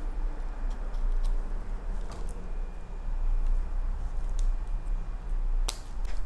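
Scissors snipping off the plastic tails of zip ties and the ends of yarn on a mesh-wrapped sphagnum moss pole. There are a few separate sharp snips, the clearest near the end, over a steady low hum.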